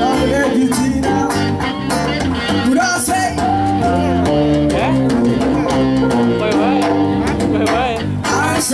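Live band playing a song: electric guitars, bass guitar, electronic keyboard and a djembe hand drum over a steady beat.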